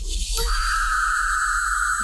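Film sound design: a steady, high-pitched ringing whine over a low rumble swells in about half a second in and holds. It is the soundtrack's rendering of a psychic's migraine-like head pain.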